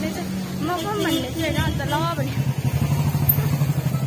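A motorcycle engine running as it passes close by, its steady hum growing louder through the second half.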